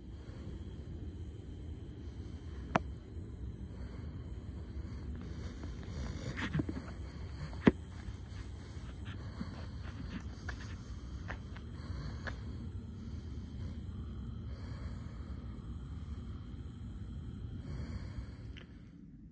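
Outdoor background sound picked up by a phone's microphone: a steady low rumble with a steady high-pitched hiss over it, and a few sharp clicks, the loudest about eight seconds in.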